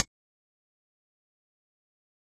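Silence: the funk track cuts off abruptly right at the start, leaving a dead-quiet soundtrack.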